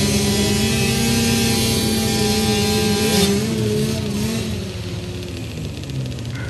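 Music for about the first three seconds, then it cuts abruptly to a row of small motocross bikes running at the start line.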